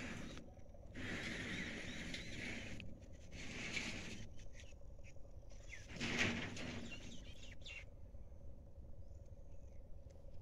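Bursts of rustling noise outdoors: a long one about a second in, shorter ones around four and six seconds in. Faint bird chirps and a faint steady hum sit underneath.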